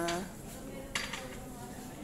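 A single short clink about a second in, over a low background hum of a gathering; a loud voice trails off at the very start.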